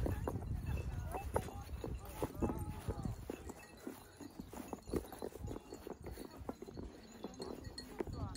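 Wind rumbling on the phone microphone, fading after about the first second, then faint distant voices and scattered light clicks and taps.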